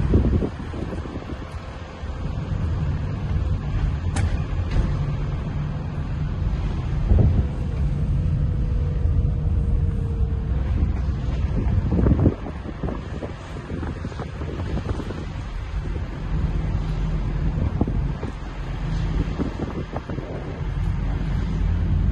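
Inside a moving car: a steady low rumble of engine and tyres on a rough road, with wind buffeting the microphone. A few thumps come through, the loudest about twelve seconds in.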